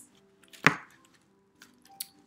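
A single sharp knock about two-thirds of a second in, with a few faint ticks of handling, as a soft-structured baby carrier's padded panel and waistband are handled.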